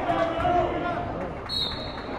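One short, steady blast of a referee's whistle about one and a half seconds in, signalling the restart of the wrestling bout from neutral position, over crowd chatter in a gym.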